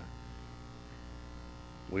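A steady electrical hum with a buzzy edge, unchanging throughout. It is the kind of mains hum a sound system picks up.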